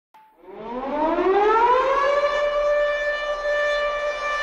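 Siren wailing, used as the intro of a hip-hop track: one tone that rises in pitch over about two seconds, then holds steady.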